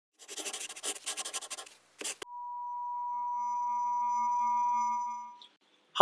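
Intro sound effects over the opening: a short run of rapid, noisy pulses, a sharp click about two seconds in, then a steady electronic tone that swells and fades away over about three seconds.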